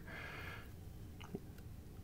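Quiet handling of a stack of trading cards, with two soft ticks a little over a second in, over low room tone.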